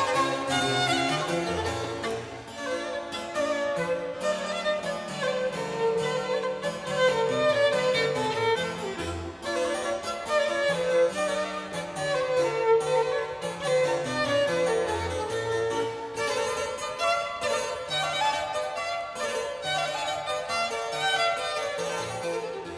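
Violin and harpsichord duo playing baroque chamber music: a bowed violin melody, the violin a 1664 Jacob Stainer, over the harpsichord's quick plucked-string notes.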